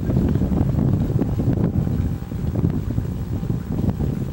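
Wind buffeting the microphone: a gusting low rumble that eases slightly about halfway through.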